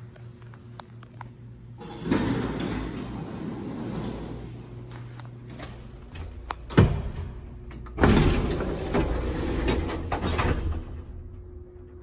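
Antique elevator's door and collapsible metal cab gate sliding and rattling, with one sharp bang about seven seconds in and a loud clattering stretch after it.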